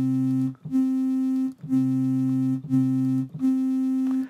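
SkyDust 3D software synthesizer playing the same note, around middle C, about five times in a row, each held just under a second. The tone is a bright sawtooth-and-sine mix, with a sine oscillator one octave below layered under some of the notes to give a deeper, more bass sound.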